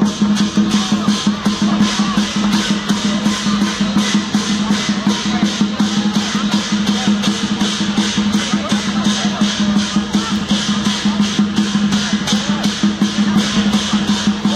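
Dragon-dance percussion: drums and cymbals beaten in a fast, even rhythm of about four strokes a second, with a steady ringing drone underneath.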